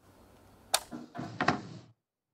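Sharp clicks and knocks over a low hiss: one crisp click about three-quarters of a second in, then a short cluster of knocks and clatter around a second and a half. The audio then cuts out abruptly to dead silence.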